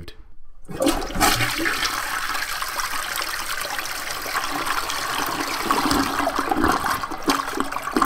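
Toilet flushing: a rush of water that starts suddenly just under a second in and runs on steadily.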